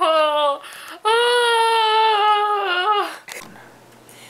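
A young woman crying: a short high wail, then one long held wail of about two seconds that breaks off, leaving it much quieter for the last second or so.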